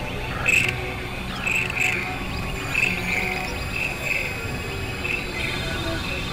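Layered experimental electronic music: a low synthesizer drone under short, high blips that recur irregularly, often in pairs.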